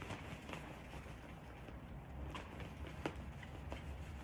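A whiteboard being wiped clean: faint rubbing on the board with a few light taps.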